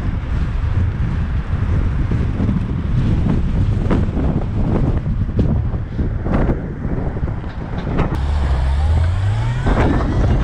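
Wind buffeting the microphone and road rumble from a bicycle riding through city traffic, with scattered small clicks and rattles. About eight seconds in, a motor vehicle's engine rises in pitch as it accelerates away.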